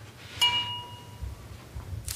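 A single light clink of a drinking glass about half a second in, ringing briefly with a clear tone before fading.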